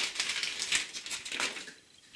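Stiff clear plastic blister packaging crackling and crinkling as a plastering trowel is handled in it and worked loose; a dense run of crackles that stops about a second and a half in.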